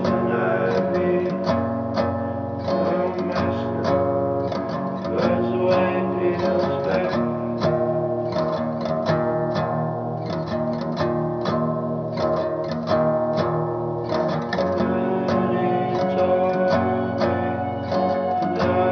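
Instrumental music led by guitar, a continuous pattern of plucked and strummed notes.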